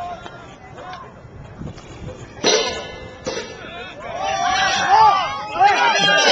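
Marching band crash cymbals on the turf: a clang about halfway in with long ringing, a second clang under a second later, then several cymbals wobbling on their rims together, their ringing rising and falling in pitch as they settle.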